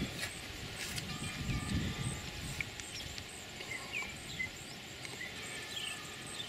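Birds chirping, short scattered chirps over quiet outdoor ambience, with a faint low rumble and a light tick about a second in.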